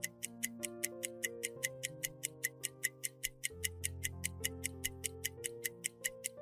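A quiz countdown timer's clock-ticking sound effect, rapid even ticks at about five a second, over a soft background music bed of held chords.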